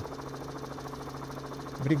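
Helicopter engine and rotor noise heard through the live aerial camera link: a steady low drone with a fast, even flutter.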